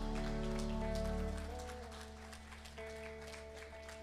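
Worship band letting a final held chord ring out: the bass drops out about a second and a half in while sustained keyboard notes fade away, with a light patter of small clicks over it.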